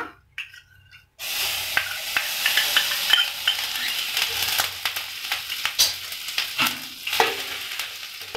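Butter sizzling as it hits a hot kadai, starting suddenly about a second in, with a steel spoon scraping and clicking against the pan. The sizzle dies down near the end as the butter melts.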